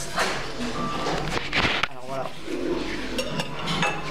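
A short laugh, then a restaurant background of voices, with a knife and fork clinking and scraping on a plate in quick clicks near the end.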